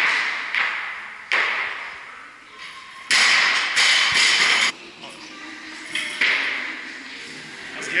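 Barbell loaded with rubber bumper plates dropped from overhead after a jerk and hitting the lifting platform: several sudden loud bangs, each fading out in the echo of a large room. A louder steady noise starts about three seconds in and cuts off after a second and a half.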